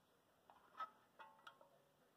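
Faint small metallic clicks, with a brief ring after the later ones, from a steel AR-15 magazine rocked in the rifle's magazine well. There are a few clicks about half a second to a second and a half in. They mark a tight fit, with no side wobble and only a little front-to-back play.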